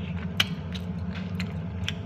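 A man chewing a mouthful of noodles close to the microphone, with a few sharp wet mouth clicks, the loudest about half a second in, over a steady low hum.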